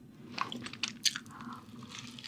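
Close-miked chewing of a mouthful of spicy sea-snail noodles, with a few short, sharp crunches.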